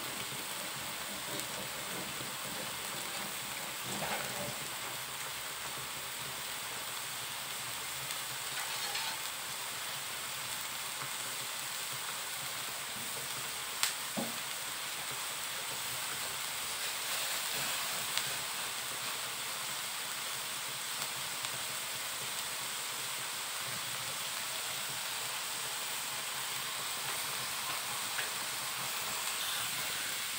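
Pounded garlic, shallot and ginger paste sizzling steadily in hot oil in a wok, with a few faint clicks along the way. The paste is being fried until it turns golden and fragrant, before the curry powder goes in.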